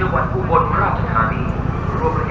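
People talking over a steady low engine rumble from an idling motor scooter.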